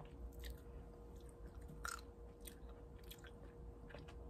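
A person chewing blueberries with the mouth closed: faint, irregular soft clicks.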